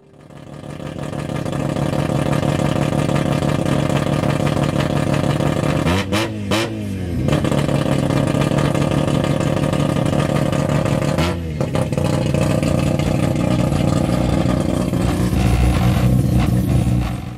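A car engine idling loudly through a large aftermarket exhaust, revved in two quick blips, about six and eleven seconds in.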